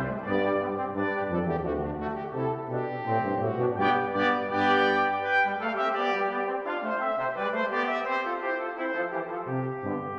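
Brass quintet of two trumpets, French horn, trombone and tuba playing an early Baroque canzona in interweaving sustained parts. The bass line drops out about six seconds in and comes back near the end.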